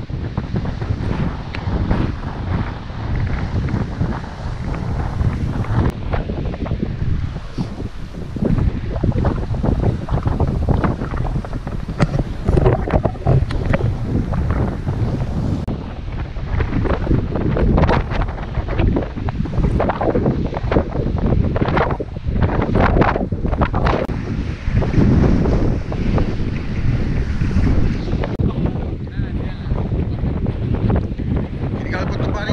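Wind buffeting the microphone: a loud, low rumble that rises and falls in gusts.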